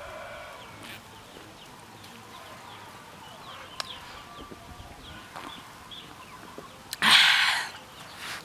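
Chickens clucking faintly in a quiet background, with a few soft clicks. About seven seconds in, a loud breathy exhale lasting under a second comes after a long drink of beer from a bowl.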